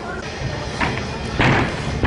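Thuds of a gymnast landing on padded gym mats: a lighter thud a little under a second in, then a loud one about half a second later.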